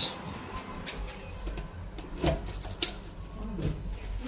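A fire key being inserted into and turned in an elevator lobby's firefighters' recall keyswitch, giving a few short metallic clicks about halfway through over a steady low hum. This is the start of fireman's service Phase 1 recall.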